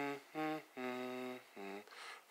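A man humming a slow wordless melody: a few separate notes, one held longer in the middle, the later notes lower in pitch.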